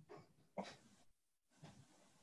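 Near silence with faint room tone, broken by a single quiet spoken "uh" about half a second in and a couple of other brief, faint sounds.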